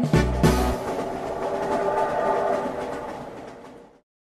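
A children's song ends on a chord just under a second in, then a passing train sound effect takes over: a rumble with a regular clatter of wheels on rails, fading steadily away as the train goes by.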